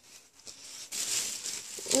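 Thin plastic shopping bags rustling and crinkling as they are handled, starting about half a second in and growing louder.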